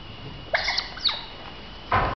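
Juvenile smooth-coated otters squeaking and chirping while they play-wrestle: a cluster of short high calls about half a second in, another about a second in, and a louder call near the end.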